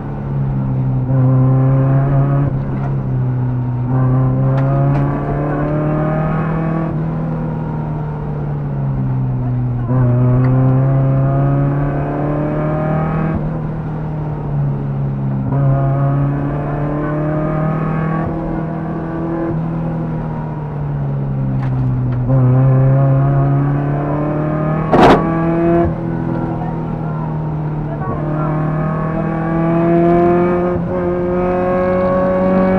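Škoda 130 rally car's four-cylinder engine, heard from inside the cabin, being driven hard on a stage. It climbs in pitch over a few seconds, then drops back as the driver shifts and lifts for corners, over and over. About five seconds before the end a single sharp bang cuts through.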